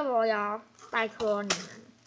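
A girl's voice speaking in short phrases, with one sharp click about one and a half seconds in.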